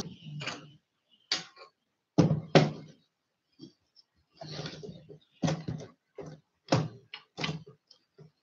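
Irregular knocks, bumps and rustles of objects being moved about and the recording device being handled, about a dozen short sounds with brief gaps between.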